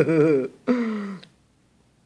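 A woman's voice laughing and saying "open" while spoon-feeding a baby, ending in a short sound with a falling pitch.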